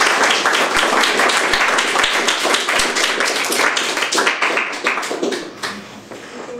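Audience applauding: a dense patter of many hands clapping that thins out and fades away near the end.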